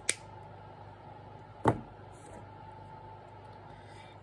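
Wire cutters snipping through a thin metal head pin with a sharp click, then a second sharp click about a second and a half later.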